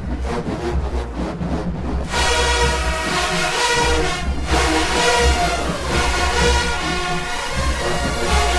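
Marching band brass playing loud over a steady low bass: a rhythmic beat for the first two seconds, then the full horn line of trumpets and sousaphones comes in together.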